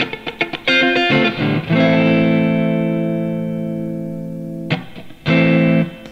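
Electric guitar, a Fender '52 reissue Telecaster, played through a miked Fender Blues Junior tube combo amp. It opens with short chord stabs, then one chord rings out and slowly fades for about three seconds, and two more short chords come near the end.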